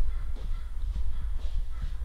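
Handheld camera handling noise: a steady low rumble with faint, scattered small clicks as the camera moves around the frame.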